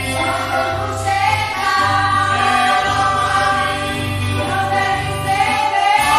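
A small church choir of women, a man and children singing a hymn together, with long held notes.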